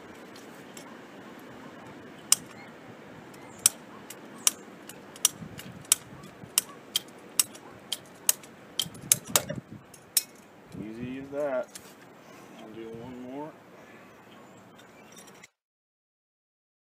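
Ratcheting PVC pipe cutter being squeezed through a PVC pipe: a sharp click with each pump of the handle, about one every half second and coming faster toward the end. Two short strained sounds that rise and fall in pitch follow as the cutter binds up in the pipe.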